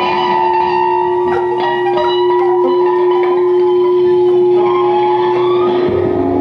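Free-improvised electroacoustic music from saxophone and live electronics: one steady held tone under fainter higher tones, with scattered short clicks.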